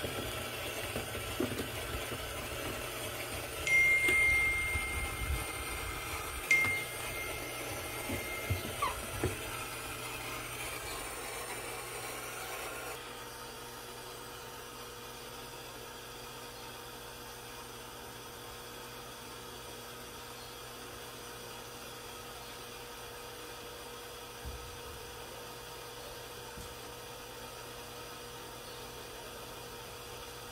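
Water running weakly from an Electrolux Turbo Economia 6 kg washer's inlet valve into the fabric-softener dispenser, slowed by a flow reducer inside the valve, with a thin high whistle for about five seconds. About halfway the flow sound drops away, leaving a faint steady hum.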